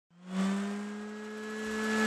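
Intro sound effect: a steady motor-like hum over an airy whoosh, its pitch creeping slowly upward. It swells in quickly, eases off, then builds again near the end.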